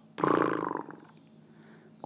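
A person's voice making one short, rough, creaky vocal sound of about half a second, shortly after the start: a guttural light-language vocalization rather than words.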